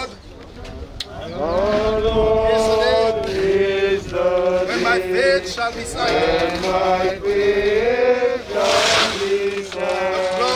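A small group of mourners singing a slow hymn without accompaniment, mixed voices holding long notes and sliding between them. The singing drops away briefly at the start and comes back in about a second in.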